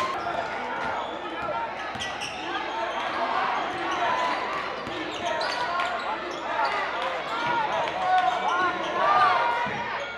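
Gymnasium crowd calling out and talking over one another as a basketball is dribbled on the court.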